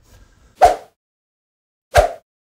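Two short, sharp sound-effect hits about a second and a half apart, each dying away quickly, from an animated logo intro.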